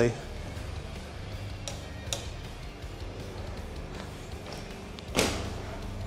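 A BMX bike's tyres and front brake on a garage floor: a couple of light clicks, then about five seconds in one sudden louder scuff as the bike is braked and pivoted up onto its front wheel for a rock walk 540. Faint background music plays underneath.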